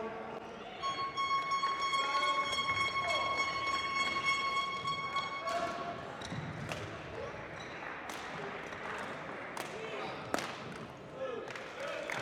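Badminton rackets hitting a shuttlecock during a rally in a large hall, a few sharp hits in the second half over background voices. In the first half, a steady high tone with overtones holds for about five seconds.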